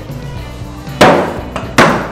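Thrown axes hitting wooden plank targets: two sharp, loud hits about three-quarters of a second apart, over background music.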